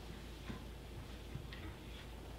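Quiet room tone with a steady low hum and a few faint, irregular ticks.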